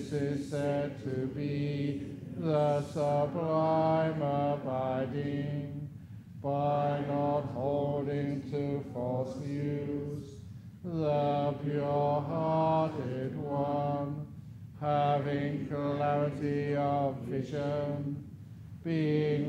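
A Buddhist monk chanting Pali verses solo, on a nearly level pitch with small steps between notes. The chant runs in long phrases of about four seconds, each broken off by a short pause for breath.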